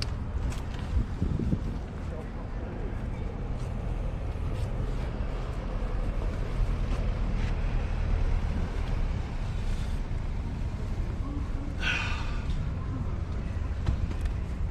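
Steady low outdoor rumble with scattered small clicks and rustles as a perch is worked out of a landing net and unhooked by hand. There is a short breathy vocal sound near the end.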